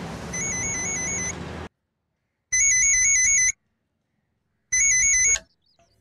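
Corded landline telephone ringing with an electronic warbling trill: three rings about two seconds apart, the last cut short when the phone is answered. Under the first ring there is a steady rushing noise that cuts off suddenly.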